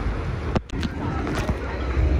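Wind buffeting the microphone on a moving catamaran, a steady low rumble with the rush of water beneath it, which drops out briefly about half a second in.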